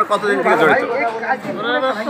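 Speech only: men talking, with no other distinct sound.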